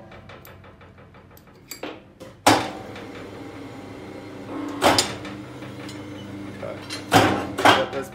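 ICARO rebar cutter-bender's electric motor and helical-geared bending table running through a 90-degree bend on a rebar bar, with a steady hum. There is a quick run of light clicks in the first two seconds, then loud knocks about two and a half, five and seven seconds in.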